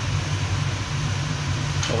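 Steady low mechanical hum with an even rushing of air from running kitchen fan machinery.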